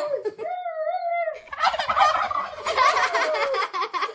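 Turkey gobbling sound effect: a short wavering call about half a second in, then a rapid gobbling warble from about a second and a half in.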